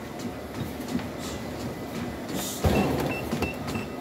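Motorized treadmill running with a steady motor and belt hum. About two-thirds of the way in it suddenly gets louder, and a quick run of short high beeps from the console follows.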